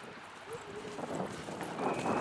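A horse cantering on grass, its hoofbeats growing louder in the last second as it passes close by.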